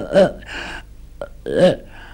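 Short vocal sounds from a man that are not words: two brief voiced bursts with a breath between them and a small click.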